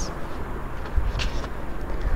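Low steady background rumble in a pause between words, with a brief soft hiss about a second in.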